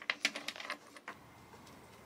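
A quick run of light metallic clicks from small brass hardware, spikes and a skull element, being handled and fitted on a leather strap, dying away after about a second.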